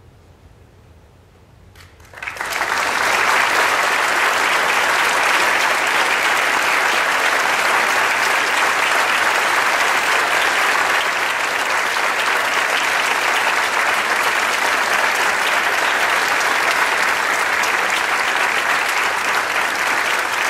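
After a brief hush, a large audience breaks into applause about two seconds in, rising quickly and then holding loud and steady: clapping at the end of a choral piece.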